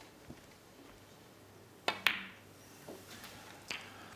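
Snooker shot: the cue tip strikes the cue ball with a sharp click about two seconds in, the balls meeting just after, and a fainter knock comes near the end as a red is potted.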